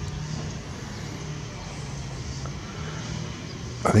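Steady, faint background rumble of distant engines, with a low hum underneath.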